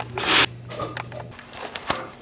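Handling noise from LEGO minifigures and the camera being moved by hand: a short rustle about a quarter second in, then scattered light plastic clicks and knocks.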